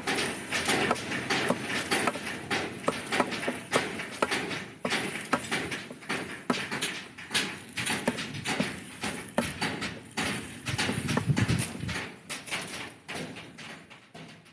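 A Hino 500 truck differential knocking and clicking irregularly as its ring and pinion gears are worked by hand at the pinion flange. The knocking is a sign of excessive gear backlash, which comes from worn bearings and a worn drive pinion and ring gear. The knocks fade near the end.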